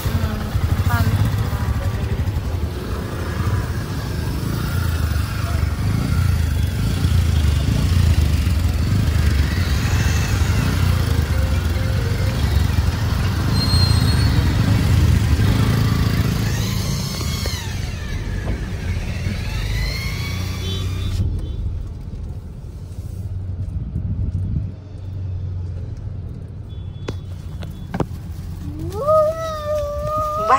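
Low, steady rumble of car and motorcycle engines in slow-moving traffic, heard from inside a car, with voices now and then. About two-thirds of the way in, the sound turns suddenly duller as the higher frequencies drop away.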